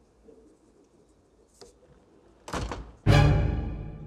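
Quiet room tone, then a sudden thump about two and a half seconds in. Half a second later a loud musical sting sounds: a chord that starts at once and rings out, fading.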